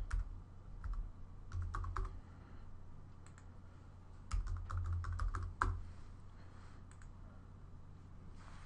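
Typing on a computer keyboard: short bursts of keystrokes, a pause, then a longer quick run of keys, and a single key click near the end.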